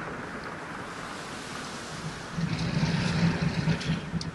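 Gale wind and rushing seas around a small sailboat heeling through big waves, with wind buffeting the microphone. About two seconds in, a louder gust and surge of water builds for a second and a half, then eases near the end.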